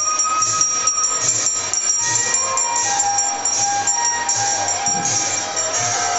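Devotional procession music: small hand cymbals and a hand bell ring in a steady rhythm, with soft low drum-like beats and held melodic notes over them.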